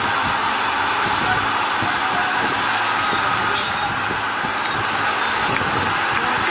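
Heavy Scania truck running as it hauls an oversized load on a multi-axle trailer: a steady engine and road noise, with a brief high hiss about three and a half seconds in.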